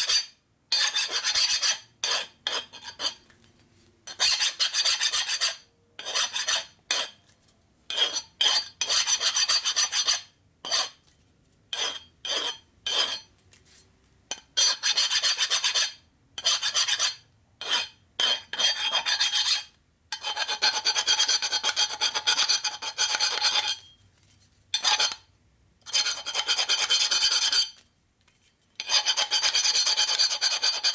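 Flat hand file deburring the edge of a square metal tube, rasping strokes that come in bursts with short pauses between them, some quick and short, with a longer unbroken run of strokes about two-thirds of the way through.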